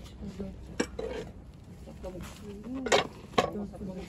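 Glass food storage container with a plastic clip-lock lid being handled, giving three sharp clinks and knocks: one about a second in and two louder ones close together near the end.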